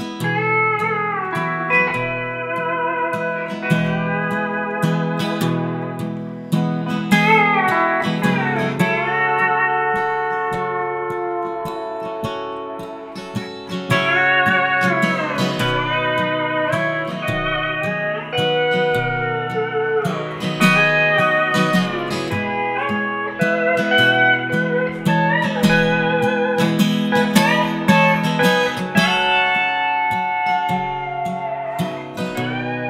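Pedal steel guitar playing an instrumental solo, its notes sliding and bending up and down, over a strummed acoustic guitar.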